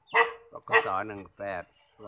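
A man speaking Thai in short phrases, with a pause near the end.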